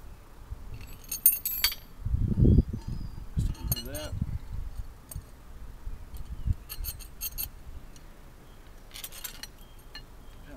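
Steel wheelie-bar parts and their bolts and spacers clinking and rattling against each other as they are handled and fitted together, in several short bursts of sharp clinks. A louder low bumping stretch comes about two seconds in.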